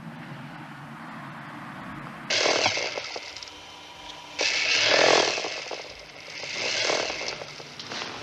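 A motor-driven tool or machine over a low steady hum, running in three bursts that each start suddenly and then fade: two sharp starts a couple of seconds apart and a softer third one near the end.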